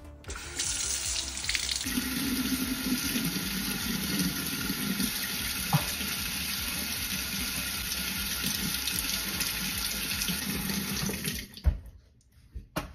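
Kitchen faucet turned on and running steadily into the sink, the stream splashing onto an egg. The water stops shortly before the end, with a sharp knock.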